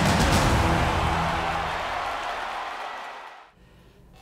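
Opening theme music of a TV sports programme, fading out and stopping about three and a half seconds in.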